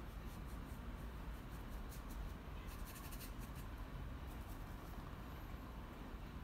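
Faint, quick scratchy strokes of a paintbrush working acrylic paint across sketchbook paper, bunched in the first half, over low steady background noise.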